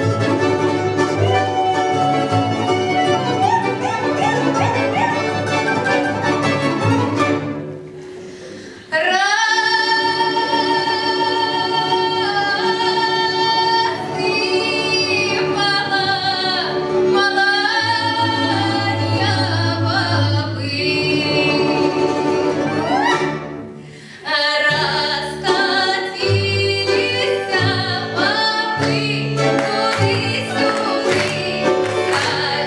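Russian folk ensemble of domras, contrabass balalaika and bayan playing live, first an instrumental opening, then accompanying a woman singing a Russian folk song from about nine seconds in, with vibrato on her long held notes. The music briefly thins out about 24 seconds in before the band picks up a livelier rhythm under the voice.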